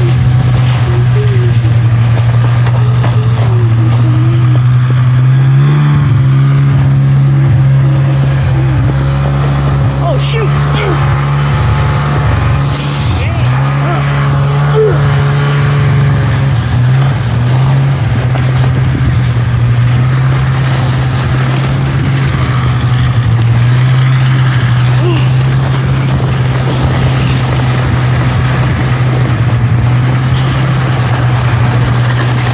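Snowmobile engine running steadily ahead of a towed toboggan, over the rush of the toboggan and snow. The engine note steps up about six seconds in and dips a few times between about twelve and seventeen seconds.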